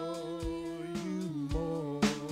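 Worship singing: voices hold a long, sustained note of the song over strummed acoustic guitar, with a strum about half a second in and another near the end.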